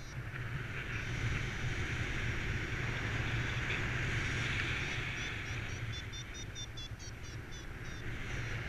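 Airflow rushing over the microphone during paraglider flight. In the last three seconds a variometer gives short, rapid high beeps, about four or five a second, the tone that signals the glider is climbing in lift.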